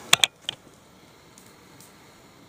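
Three or four quick, sharp clicks in the first half second, then a faint, steady hiss.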